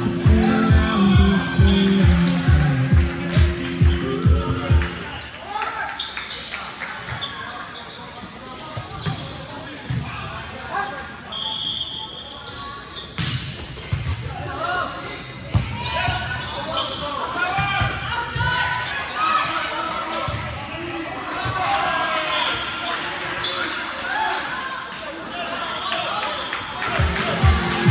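Music with a steady beat plays for about five seconds, then stops suddenly. Voices of players and onlookers follow in a large gym, with volleyballs being hit and bouncing off the floor, and one brief high whistle tone a little before the middle.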